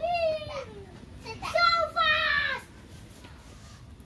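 Children shouting during a football game: a high call at the start that falls in pitch, then a longer shout about a second and a half in.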